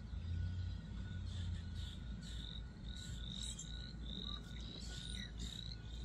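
Outdoor animal calls: a run of short, high, slightly rising peeps, about two a second from about two seconds in, over a faint steady high trill and a low rumble.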